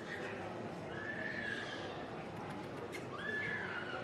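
A dog whining: two long, high, drawn-out whines about a second each, over the murmur of a crowd.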